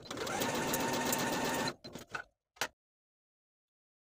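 Home sewing machine stitching a dart at a steady speed for nearly two seconds, then stopping, followed by a few short clicks.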